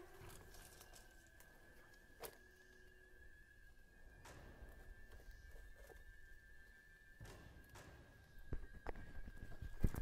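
Faint footsteps and rustling of dry branches as someone moves through brush, with a few sharp clicks and knocks, over a faint steady high tone.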